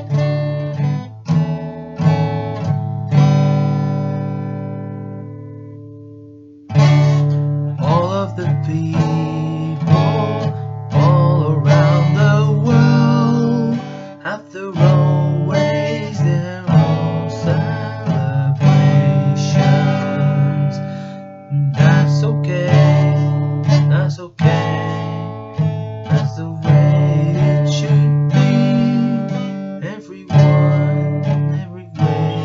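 Acoustic guitar being strummed in chords. A few seconds in, one chord is left to ring out and fade, then the strumming picks up again and carries on steadily.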